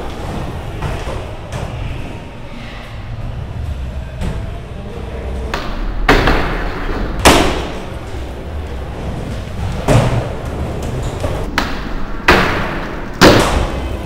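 Skateboards in an indoor skatepark: a low rumble of wheels rolling, with about five sharp board impacts in the second half as decks hit the floor and ramps, echoing in the hall.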